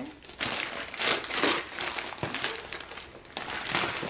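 Wrapping and tissue paper being crumpled and rustled as a present is unwrapped, in a run of crinkling bursts that are loudest in the first half and again near the end.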